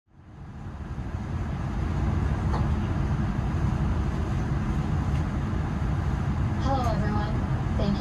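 Steady low rumble of a Boeing 787-9 cabin at the gate, fading in over the first two seconds. A faint voice from the safety announcement begins near the end.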